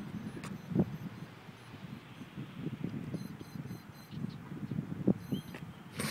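Electric twelve-rotor RC multicopter (dodecacopter) hovering low, its propellers and motors making a steady whirring noise.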